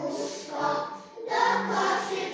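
A group of preschool children singing together, with a brief break between phrases a little after a second in.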